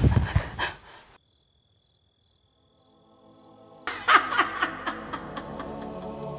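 A shouted word ends, then a second or two of near silence as a low film-score drone rises in. About four seconds in, sound cuts back in suddenly with a person laughing over the sustained music.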